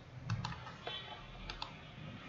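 Faint computer mouse clicks in two quick pairs, one just after the start and one about a second and a half in.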